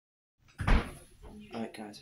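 A single loud thump, like a door or cupboard banging shut, about half a second in, followed by a person speaking.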